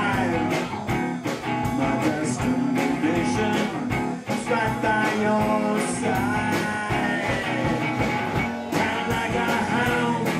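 Live band playing a bluesy rock song: guitar over drums keeping a steady beat.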